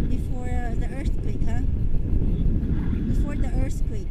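Wind rushing over the camera microphone during a tandem paragliding flight, a steady low rumble throughout. A person's voice comes over it twice, briefly near the start and again near the end.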